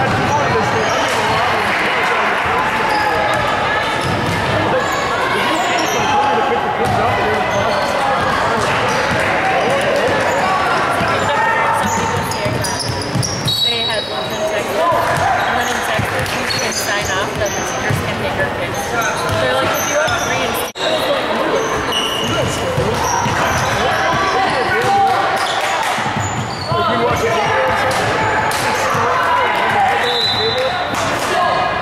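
A basketball bouncing on a hardwood gym floor under steady, overlapping chatter and shouts from players and spectators, echoing in a large gym.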